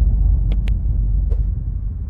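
A loud, deep rumbling noise with three short sharp clicks in it.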